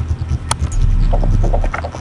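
Low, uneven rumbling of wind buffeting the camera microphone, with one sharp click about half a second in.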